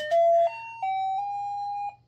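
Novelty Santa-face doorbell playing its electronic tune, plain beeping notes stepping up and down in pitch. The last note is held for about a second, then cuts off suddenly near the end.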